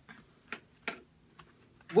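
A few light clicks and knocks, four or five in under two seconds, from a box of markers and coloring books being handled and set down on a tabletop.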